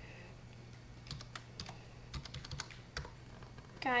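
Computer keyboard typing: about ten quick key clicks in short runs between one and three seconds in, over a steady low hum.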